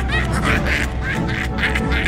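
A clown character's rapid cackling laugh, in quick bursts about five a second, over spooky background music.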